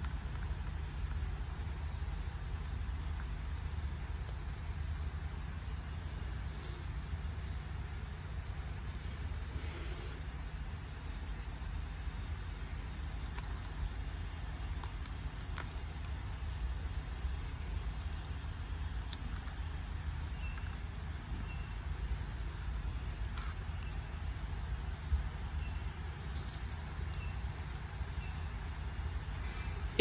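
Steady low background rumble outdoors, with a few faint clicks and some short, faint high chirps in the second half.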